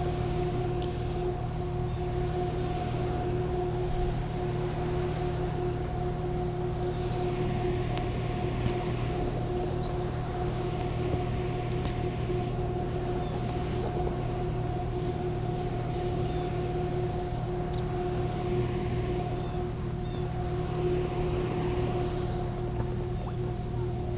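Steady drone of a dam's powerhouse and spillway: a constant two-note machine hum over a low rumble of moving water, unchanging throughout.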